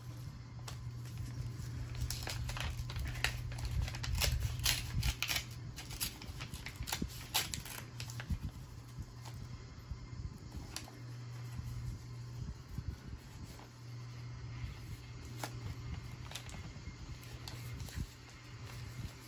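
Paper envelope being worked open by hand: scattered crinkles, rustles and small tearing sounds, busiest in the first half, over a steady low hum.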